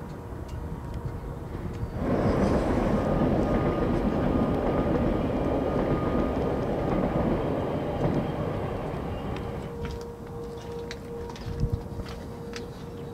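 A loud, steady rushing vehicle noise starts suddenly about two seconds in and fades slowly over the next eight seconds.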